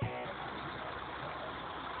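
A heavy truck's engine running steadily under an even hiss.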